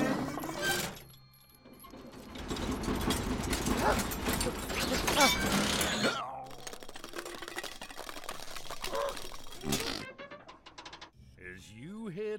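A cartoon tow truck's metal tow hook and chain rattling and clanking in quick succession, after a burst of nervous laughter. The clatter is densest in the first half and thins out, with a sharp clank near the end.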